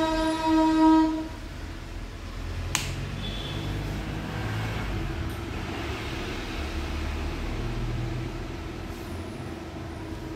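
Demo sound played through a stereo amplifier's speakers: a held, steady note rings on for about a second and then stops. A low rumble and hum follow, with a single sharp click near the three-second mark.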